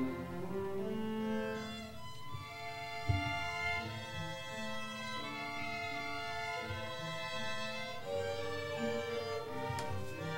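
Student string orchestra (violins, violas, cellos and double bass) playing held, bowed notes in several layered parts that move from chord to chord. A single low thump sounds about three seconds in.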